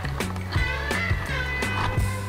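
Background music with a steady beat: held bass notes and regular drum hits, about two to three a second.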